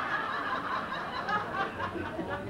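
Audience laughing at a comedian's joke, many voices at once, thinning out toward the end.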